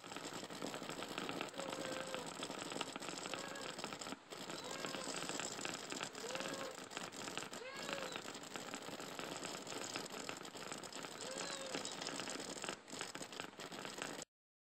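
Fermenter airlock bubbling over a steady hiss: short, soft pitched blips come every second or two, irregularly, as gas escapes from the freshly pitched fermenter.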